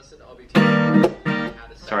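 Acoustic guitar strummed twice: a chord rings for about half a second, then a second, shorter chord follows.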